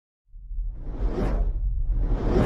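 Whoosh sound effect over a deep rumble, rising out of silence about a quarter-second in, swelling and easing, with a second whoosh starting to build at the end.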